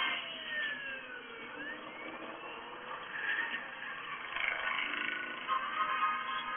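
Film soundtrack from a screen's speaker: whooshing fly-by effects with pitches that glide down and up, over music. Steadier held tones come in about halfway through.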